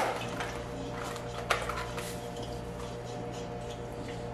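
A silicone spatula stirring water in a stainless steel mixing bowl: faint scrapes and a light tap about one and a half seconds in, over a steady low hum.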